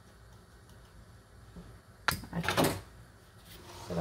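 A plastic food-processor bowl being tipped and tapped over a stainless steel mixing bowl to empty out a garlic and oregano paste. There is a sharp knock about halfway through, then a brief clatter.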